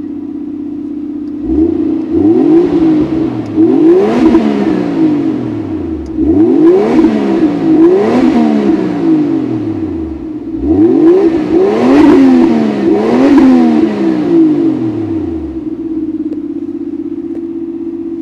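Toyota Soarer's 1JZ-GTE 2.5-litre single-turbo straight-six, parked, idling steadily through a loud aftermarket Nür Spec exhaust and then blipped in three bursts of quick revs, each rising and falling back, before settling to idle again near the end.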